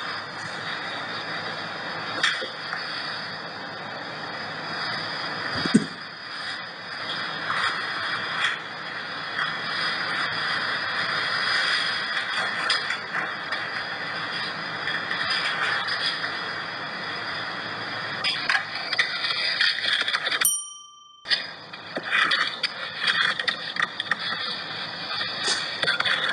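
Steady hiss of a surveillance camera's recorded audio played back through a phone's speaker, with scattered faint clicks and knocks. The sound cuts out for under a second about twenty seconds in.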